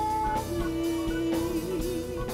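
Live acoustic band playing: guitars over a drum kit, with a lead line holding one long note that wavers near the end.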